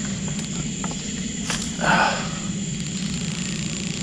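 A boat motor idling with a steady low rumble under a steady high drone of night insects. There are a few faint clicks, and a short rustling burst about two seconds in.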